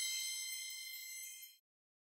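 High, bell-like chime ringing out with several bright steady tones, fading slightly, then cutting off suddenly about one and a half seconds in.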